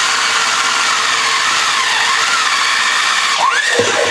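Handheld electric drill boring through a sheet-metal can lid: the motor runs steadily and the bit grinds in the metal with a wavering whine, with a short rising sweep near the end.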